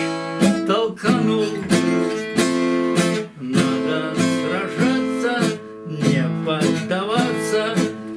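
Acoustic guitar strummed in a steady rhythm, about two chords a second, as an instrumental passage between sung verses.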